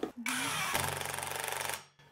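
Cordless impact wrench driving a fixing into the wall: it runs for about a second and a half, goes into a fast hammering rattle partway through as the fastener tightens, then stops suddenly.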